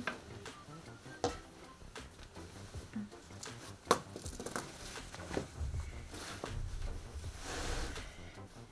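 Handling noises on a wooden tabletop: a few light knocks and clicks, the loudest about four seconds in as a small plastic container is moved and set down, then corduroy fabric rustling near the end as the jacket is spread out.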